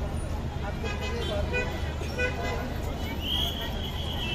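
Busy street ambience: crowd chatter over a steady traffic rumble, with a high steady tone starting about three seconds in.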